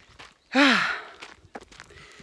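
A woman's breathy, voiced sigh, a single short 'haah' about half a second in whose pitch rises and then falls.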